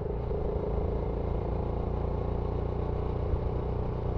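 BSA Gold Star 650's 650 cc single-cylinder engine running steadily as the motorcycle cruises, with road noise.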